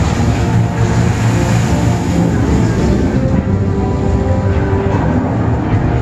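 Action-film soundtrack played loud over speakers: a dense, steady low rumble of effects under held music notes.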